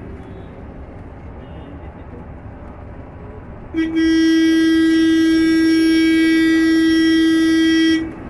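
A vehicle horn blown in one long, loud, steady note lasting about four seconds, starting about halfway through and cutting off sharply. It sounds over the low road and tyre noise of a moving electric bus.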